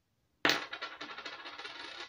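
Loose coins clattering and jingling together in a dense run of rapid metallic strikes. It starts sharply about half a second in and stops abruptly near the end.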